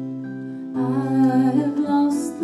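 Live acoustic music from a duo: held notes, then about three quarters of a second in a louder, wavering melody line comes in over them, wordless, like humming or a bowed string.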